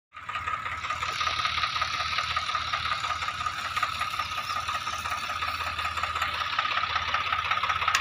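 Swaraj 744 FE tractor's three-cylinder diesel engine running steadily as it pulls a trolley loaded with straw, a low even chugging under a steady high whine.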